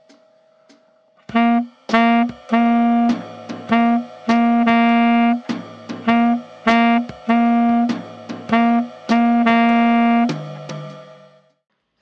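Tenor saxophone playing a short syncopated jazz phrase twice: a detached note and an accented note, then a note anticipated half a beat early. Notes alternate between short and held, and the phrase ends on a lower held note that fades near the end. A few soft, evenly spaced ticks come before the first note.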